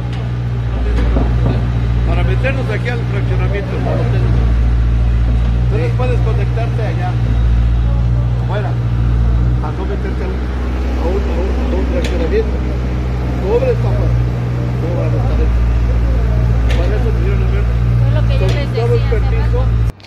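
Several people talking and arguing in Spanish over a loud, steady low rumble that swells and dips.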